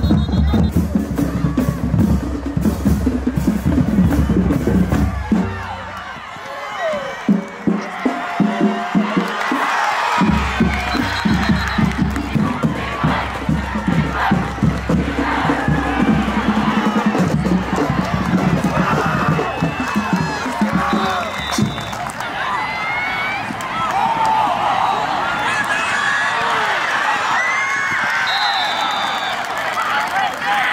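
Background music with a heavy bass beat that drops out about six seconds in. It gives way to a football stadium crowd cheering and shouting, with a few brief high whistle tones.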